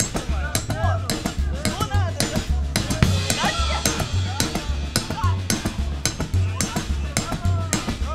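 Live rock band playing a repeating groove: a steady drum beat with kick and snare under a bass line that alternates between two low notes about every half second, with voices calling out over it.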